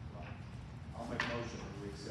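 Faint, indistinct talking in a meeting room, a voice rising briefly about a second in, over a steady low hum.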